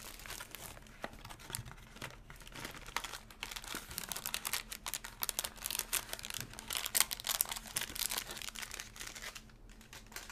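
Foil wrappers of baseball card packs crinkling and rustling as they are handled and torn open, in a dense run of irregular rustles and clicks that grows busier in the middle.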